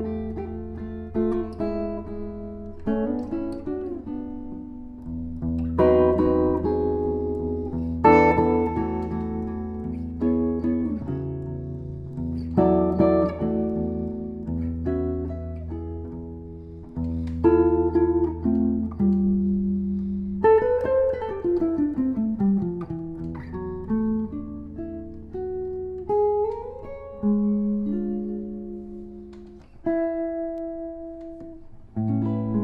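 Solo jazz guitar played on a Gibson archtop: slow chord-melody playing, with chords plucked every second or two and left to ring and fade. A quick descending run comes a little past the middle.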